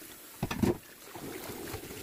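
Tap water running into a cast iron skillet in a stainless steel sink, with a few loud knocks about half a second in as the heavy pan is handled. Then comes the steady scrubbing of a dish brush on the pan under the running water.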